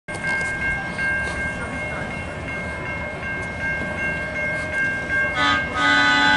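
Grade crossing bell ringing as a steady two-note tone. About five and a half seconds in, a horn starts over it: the CSX high-rail truck sounding its horn at the crossing.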